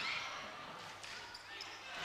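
Faint gym ambience: a low crowd murmur in a large hall, with a basketball being dribbled on the hardwood court.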